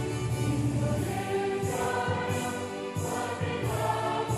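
A choir singing held notes over instrumental accompaniment, with a regular beat about once a second.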